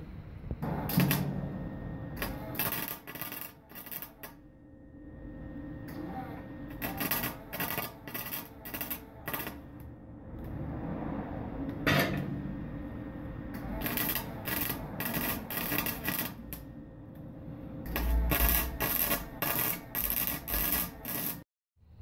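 Arc welding: a welder tack-welding a square steel-tube leg onto a steel drum, heard as several short runs of sizzling, crackling arc with pauses between the tacks.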